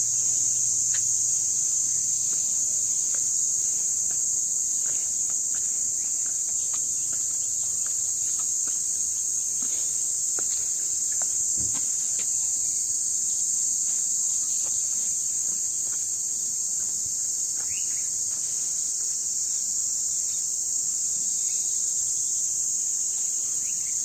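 Steady, high-pitched insect chorus, with a few faint taps now and then.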